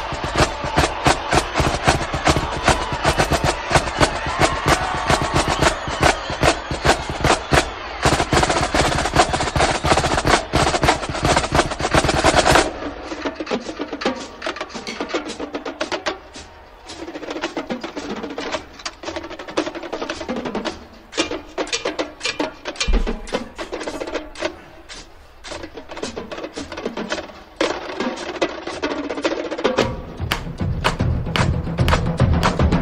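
Marching snare drumline playing a fast battle cadence, dense rapid stick strokes and rolls, with sticks striking a rubber practice pad along with it. About twelve seconds in, the sound thins out and turns sparser and more broken up.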